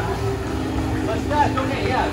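Indistinct voices of people talking, with a steady low hum underneath.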